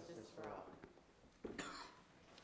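A single cough, short and sharp, about one and a half seconds in, in a large reverberant chamber. Before it, faint voices trail off.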